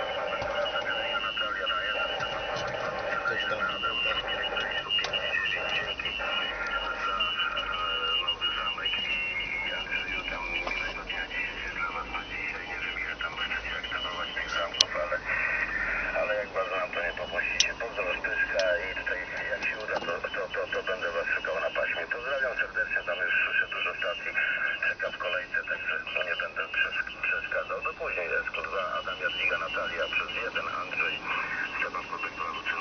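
Another amateur radio station's voice answering over the car-mounted transceiver's loudspeaker: narrow, tinny radio speech with a noise hiss behind it, and a couple of brief clicks partway through.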